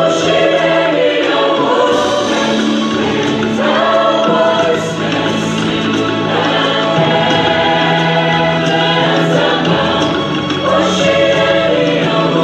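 Women's choir singing in long, held phrases.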